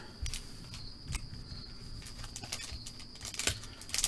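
Faint rustles and light ticks of foil trading-card packs being handled and set down on a table, with a few slightly louder taps. A faint, steady high whine runs underneath.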